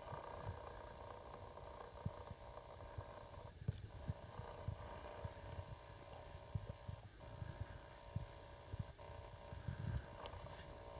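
Faint low rumble of wind buffeting the camcorder microphone, with irregular thumps, over a steady low hum from the camera.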